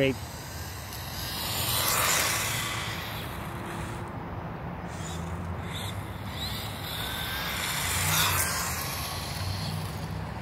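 Brushed electric motor of an ECX Torment 1/18-scale RC truck whining and its tyres rolling on asphalt as it drives along, growing louder about two seconds in and again near the end as it runs closer.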